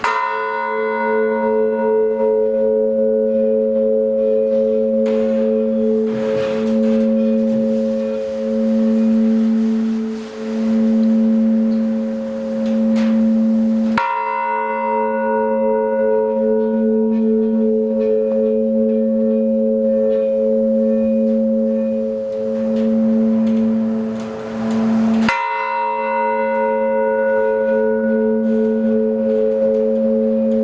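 A large bronze blagovest, the church's main bell of about 70 kg, is struck by its clapper three times, slowly, about eleven to fourteen seconds apart. Each stroke rings on long with a slowly pulsing hum. This is the slow memorial (zaupokoynaya) toll, struck while the prayer to the Mother of God is read.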